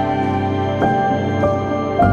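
Calm new-age background music of sustained strings and synth chords, with a couple of soft new notes coming in during the second half.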